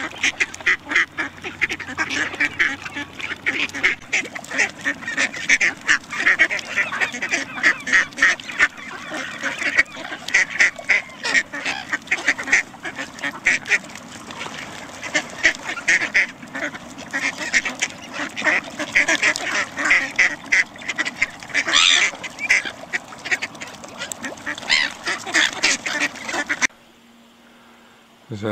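A flock of ducks quacking busily and continuously as they crowd in to be fed. The sound cuts off suddenly near the end.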